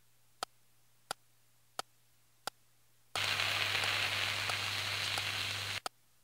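Sharp ticks about two-thirds of a second apart, then a loud steady hiss that starts about three seconds in and cuts off suddenly near the end.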